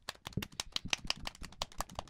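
Improvised drum roll: fast, irregular hand taps, about a dozen a second.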